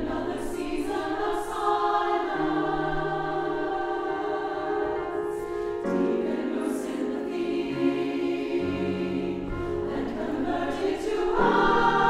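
Choir singing slow, sustained chords that change about six seconds in and swell louder near the end.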